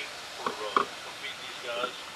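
Indistinct voices of people talking, words not clear, in short bursts over a steady outdoor background.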